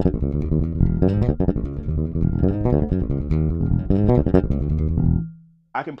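Electric bass guitar playing a busy groove very fast but deliberately unclean, so the notes run together and sound muddy. The fast run stops about five seconds in on a briefly held low note.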